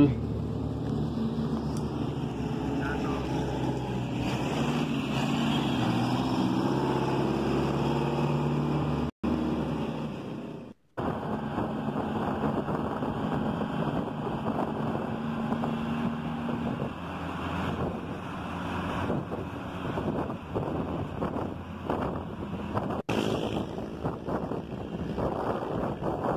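A vintage bus's engine running as it comes up the street, its pitch rising over a few seconds. After a cut, steady road and wind noise is heard from inside a car following a bus.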